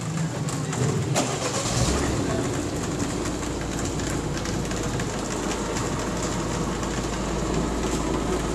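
City street traffic noise: a steady low engine rumble sets in about two seconds in and carries on over a general hiss of traffic.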